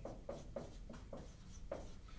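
Marker writing on a whiteboard: a quick run of short, faint strokes as a word is written out.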